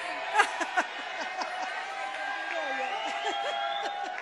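A woman laughing at the microphones over murmuring and chuckling from the audience.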